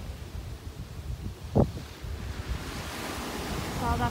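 Wind buffeting the microphone over the rush of ocean surf breaking, with one loud thump about a second and a half in; the surf's hiss grows louder over the last second or so.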